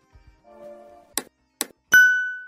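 Outro sound effects: a soft, faint chord, then two sharp clicks, then a bright bell-like ding near the end that rings on, like a notification chime.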